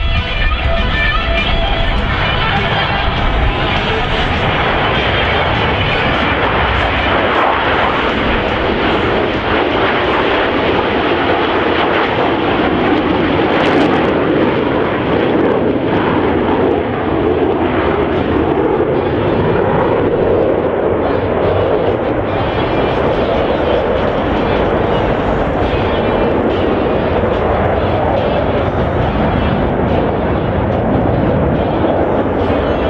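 Twin-engine jet noise from four F/A-18F Super Hornets flying overhead in formation: a loud, steady rush of turbofan sound. About halfway through, its pitch dips slightly and then rises again.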